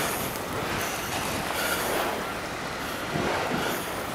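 Steady rushing street noise in a snowstorm: passing traffic and wind on the microphone.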